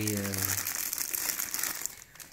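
Thin clear plastic bag crinkling as the hands handle and open it, with the helmet's padding inside. It makes a dense, continuous crackle.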